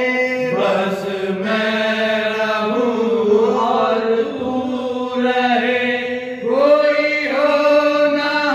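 Several male voices singing a Sufi devotional kalam together, qawwali-style, through microphones. They hold long sustained notes with short breaks for breath between phrases.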